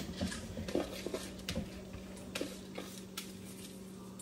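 Scattered light clinks and knocks of a measuring cup against a cooking pot as rice is measured out and added to the pot.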